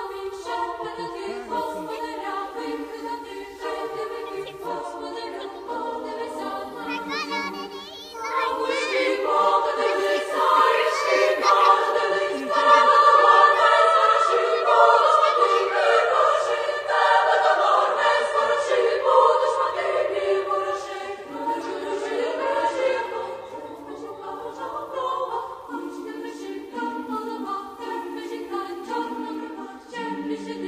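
Background music: a choir singing held chords, swelling about eight seconds in and easing back after about twenty seconds.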